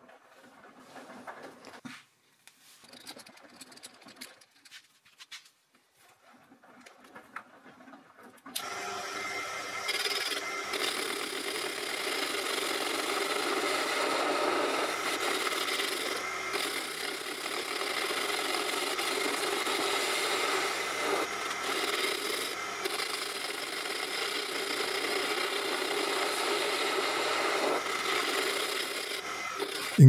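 Proxxon PD 250/e mini lathe facing a 42CrMo4 steel disc with an insert tool: a steady, rough scraping of the cut over the motor's whine. It starts suddenly about eight seconds in, after a few faint handling sounds. The insert is engaging most of the face, and there is heavy drag and some rubbing of the tool near the centre.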